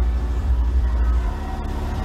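A car engine running at idle, a steady low rumble.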